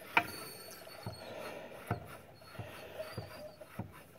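Homemade grip trainer with a 140-pound garage door spring being squeezed: light clicks and faint squeaks from the spring and iron-pipe handles, with one sharper click just after the start.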